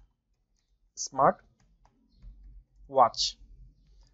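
Faint typing on a computer keyboard, with two short spoken words, about a second and three seconds in, louder than the typing.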